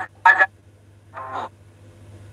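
Two brief voice sounds, like short spoken syllables, the first about a quarter second in and the second, quieter, just after a second in, over a steady low hum.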